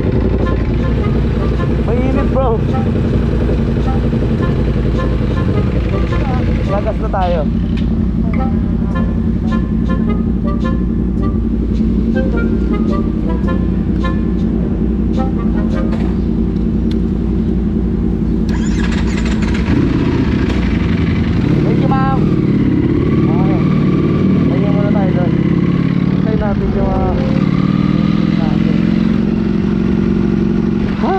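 Ducati Panigale V4 Speciale's V4 engine heard from the rider's seat, running steadily at low revs as the bike rolls slowly. In the second half the revs change and climb as it pulls away.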